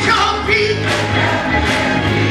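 Gospel choir singing with organ accompaniment, the organ holding sustained low bass notes under the voices.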